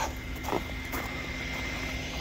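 Steady low background hum with a faint short sound about half a second in.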